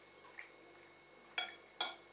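Two sharp clinks of metal cutlery against a plate, about half a second apart, in the second half.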